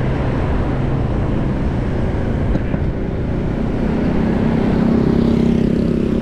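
Steady engine and road noise from a motorbike riding along a city street, with a steady engine hum growing louder in the second half.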